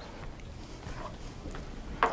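Quiet classroom room tone: a steady low hum with faint, soft indistinct noises about a second in.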